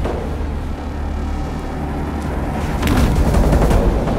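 Film soundtrack music between sung lines: a steady low rumbling drone, then a run of sharp cracking hits and a swell in loudness about three seconds in.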